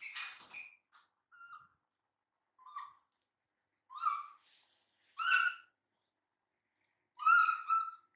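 Baby macaque calling: a series of about six short, high-pitched squeaky calls with silences between, the loudest about four, five and seven seconds in.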